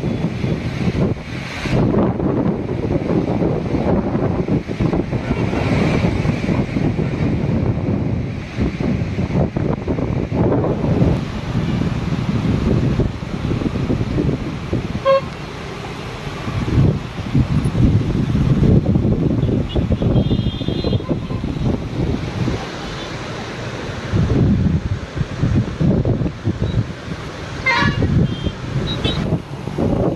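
Swollen floodwater rushing over rocks, with gusty wind buffeting the microphone. Road traffic passes behind, and short vehicle-horn toots sound about two-thirds of the way through and again near the end.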